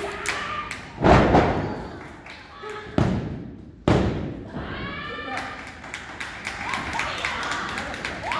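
A body crashing onto a wrestling ring's canvas about a second in, loud and booming, as from a dive off the top turnbuckle. Two sharp slaps on the mat follow about a second apart: a referee counting a pin.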